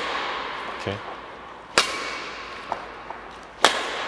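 Badminton racket striking a shuttlecock on drive shots, twice, about two seconds apart: each a sharp crack that rings out in a large hall.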